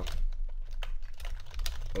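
Typing on a computer keyboard: a run of quick keystrokes over a steady low hum.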